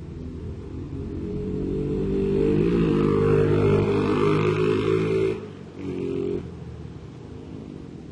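A motor vehicle's engine passing close by, growing louder over a few seconds to a peak. It cuts off sharply about five seconds in, swells again briefly, then falls back to a steady low rumble.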